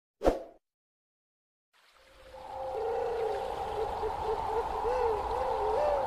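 A brief sound effect about a third of a second in, as the subscribe-button animation ends, then near silence. About two seconds in, background music fades in and grows louder: a held note over a slowly wavering, gliding melody.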